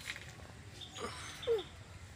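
Two faint short animal calls, about a second in and again half a second later, the second louder and falling in pitch.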